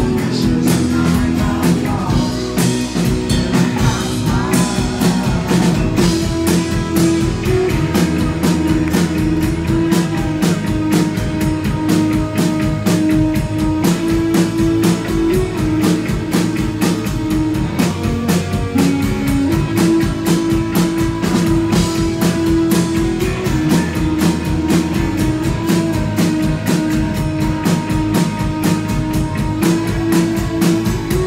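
Live rock band playing: guitar and a drum kit keeping a steady beat under held pitched notes, loud throughout.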